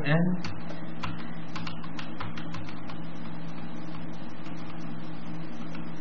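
Computer keyboard keys pressed in quick succession, a run of short clicks mostly in the first three seconds and a few more later, stepping through the registry entries beginning with N. Under them runs a steady low electrical hum.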